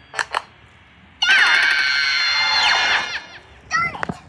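Cartoon soundtrack heard through a TV speaker: two quick hand claps, then about a second in a loud, shrill scream-like sound effect lasting about two seconds, with a falling whistle near its end.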